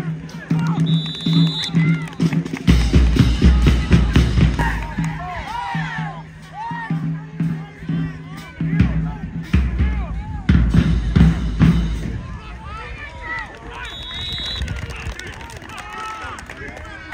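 A marching band playing in the stands, brass with heavy bass drum that comes in strongly twice, mixed with crowd voices and shouts.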